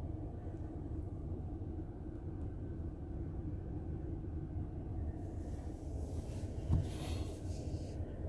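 Steady low rumble inside the cabin of a 2020 Chrysler Pacifica minivan idling, with one short knock near the end.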